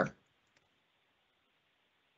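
A voice trails off at the very start, then near silence: room tone with one or two faint small clicks about half a second in.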